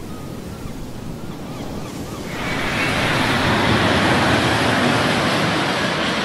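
Ocean surf washing in, with a few faint chirps, then a louder, steady rushing roar from about two seconds in.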